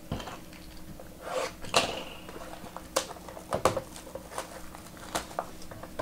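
Fingers handling and tapping a sealed, shrink-wrapped trading-card box: a scattering of light, irregular taps and plastic rustles.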